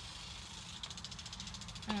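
Quiet outdoor background: a steady low rumble with a fast, even, high-pitched pulsing buzz over it.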